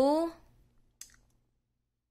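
A short voice sound with a rising pitch, then a single click about a second in: a front-panel button on a Singing Machine karaoke player being pressed.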